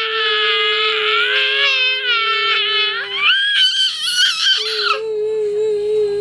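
A toddler's long, high-pitched squealing wail, drawn out and bending up and down in pitch, that breaks off about five seconds in.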